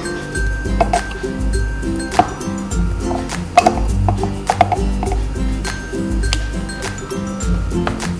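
Background music with a steady bass line. Over it come scattered light clinks and taps as a plastic spoon knocks against a ceramic bowl and a plastic cup while mango pieces are scooped in.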